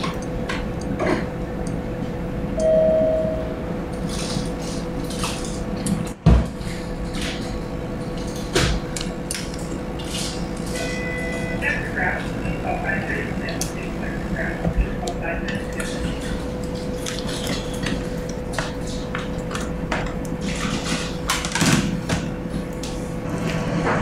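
Small clicks and clinks of a plastic 60 cc syringe and three-way stopcock being worked by hand while blood is drawn and pushed into a collection bag, over a steady machine hum. A short tone sounds about three seconds in, and a single loud thump about six seconds in.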